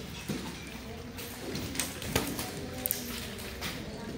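Low background music with several light taps and knocks from a wooden nunchaku being spun and caught.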